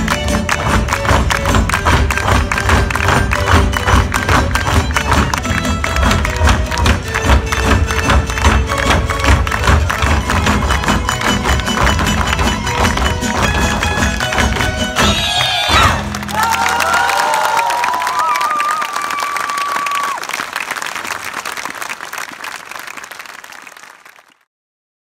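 Live folk-ensemble music with a strong, driving beat for a traditional dance, ending about two-thirds of the way through; audience applause and cheering follow and fade out near the end.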